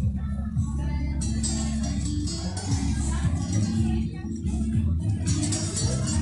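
Live band music with sustained low brass notes and percussion, over the chatter of a crowd.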